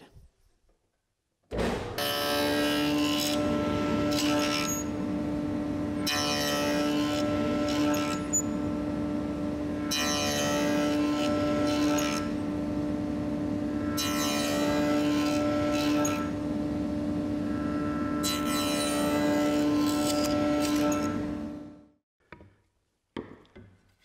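Table saw running with a dado blade, its steady hum broken by about five cutting passes, each a couple of seconds long, roughly every four seconds, as the dado stack clears the waste from a groove in a board. It starts suddenly shortly after the beginning and dies away near the end.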